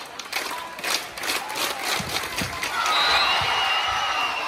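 Gymnasium crowd cheering and clapping during a volleyball rally. A quick run of sharp claps or hits fills the first half, and louder high shouting comes near the end as the point is won.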